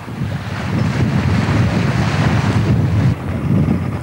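Wind buffeting the microphone over the rush of sea water along a moving boat's hull, a steady noise that builds about half a second in.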